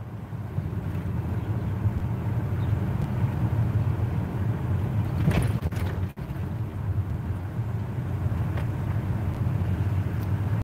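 Steady low hum of a car's engine running, heard from inside the cabin. There is a brief rustle about five seconds in.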